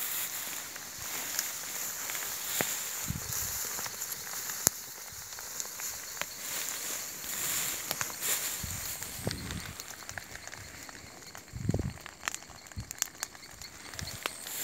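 Footsteps wading through tall grass, the stems rustling and swishing, with a few dull thumps along the way.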